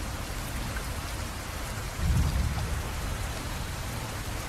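Steady rain falling, an even hiss, with a low rumble swelling about halfway through and fading.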